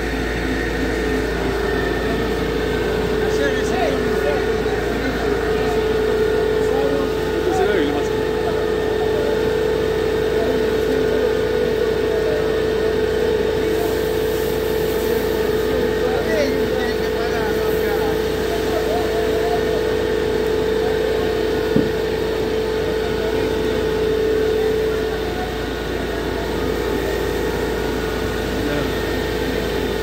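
A fire engine's motor running steadily under load with a constant drone, which eases off about 25 seconds in. A single sharp click comes near the 22-second mark.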